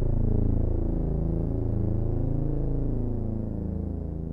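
Closing bars of a gothic metal song: a low chord of several notes held and ringing out, its level slowly sinking toward the end.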